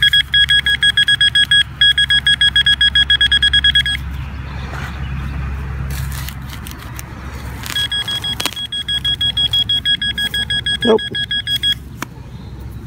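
Metal detector beeping rapidly at one steady pitch, about seven beeps a second, signalling a metal target close under it, which turns out to be a quarter. It beeps for about four seconds, stops while a few knocks sound, then beeps again from about eight seconds in until just before the end.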